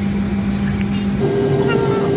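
Steady drone of a jet airliner's cabin noise with a constant low hum; a little over a second in, the hum changes abruptly to a higher pitch. Faint voices near the end.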